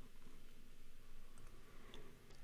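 A couple of faint, brief clicks over quiet room tone, from the slide being advanced on the computer.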